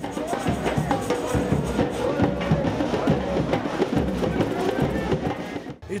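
A samba bateria playing in the street: surdo bass drums and other percussion keeping up a dense, driving carnival rhythm. It cuts off abruptly just before the end.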